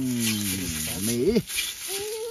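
Pork skin sizzling as it is rubbed over a hot, steaming cast-iron wok to season the new pan, under a long drawn-out "aiii" exclamation from a man's voice that ends about a second and a half in.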